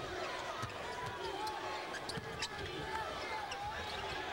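Game sound from a college basketball game on a hardwood court: a basketball bouncing in a series of separate knocks, shoes squeaking briefly a few times, over the steady noise of an arena crowd.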